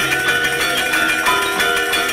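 Balinese gamelan playing live: many bronze metallophones ringing together in a fast, busy pattern. A low note comes in at the start and again about one and a half seconds in.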